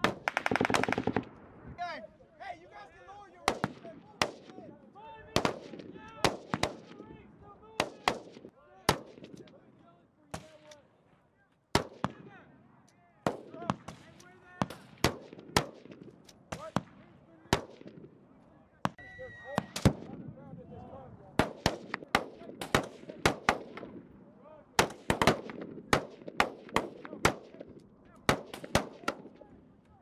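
Small-arms fire: many rifle shots at uneven intervals, singly and in quick strings, with a fast automatic burst at the start. Voices can be heard between the shots.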